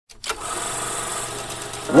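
A steady low hum with hiss, starting just after a click, with a voice beginning to sing at the very end.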